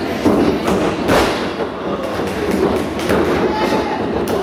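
A few sharp thuds and slaps of wrestlers striking each other and landing on the padded ring canvas, the loudest about a second in, over a steady background of hall noise.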